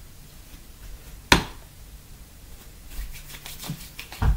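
Hands handling a tube of leg cream: one sharp click about a second in, then soft, quick rubbing and smearing sounds of the cream being worked between the palms near the end.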